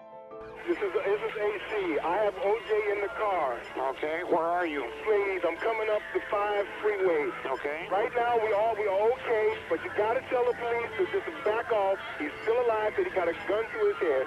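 A person talking continuously in a thin, band-limited recording that sounds like a radio or TV broadcast, with faint music underneath.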